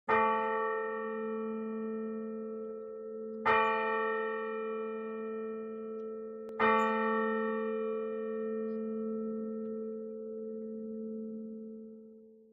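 A bell struck three times, about three seconds apart, each stroke ringing on into the next over a low steady hum, the ringing fading near the end. It sounds the start of the liturgy.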